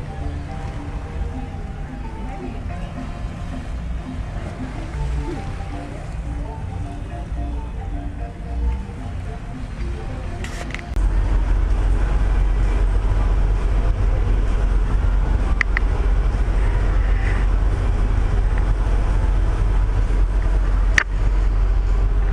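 Faint music over outdoor ambience, then from about eleven seconds a louder, steady low rumble on the deck of a docked cruise ship, with a few brief clicks.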